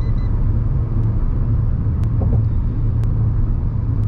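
Steady low rumble of road and engine noise heard inside the cabin of a Maruti Suzuki Vitara Brezza driving along a highway.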